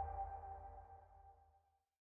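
The last chord of a TV channel's closing ident music, a held electronic tone fading out and gone about a second and a half in.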